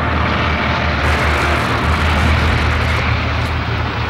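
A loud, steady low rumble with a dense roaring hiss over it, a dramatic sound effect in a song's soundtrack that swells slightly after about a second.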